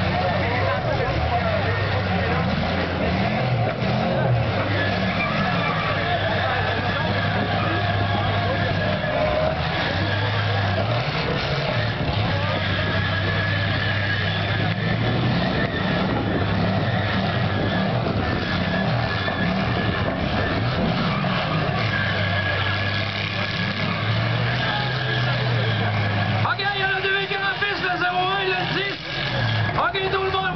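V6 demolition derby cars' engines running and revving in the arena, their note rising and falling again and again as the cars push and collide, with tyre and crowd noise beneath. A voice comes in near the end.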